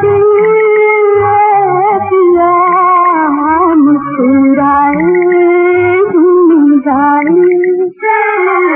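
Music from a 1960s Urdu film song: a long, sliding melody line held almost without a break, over regular drum beats. The melody drops out briefly about four seconds in and again near the end.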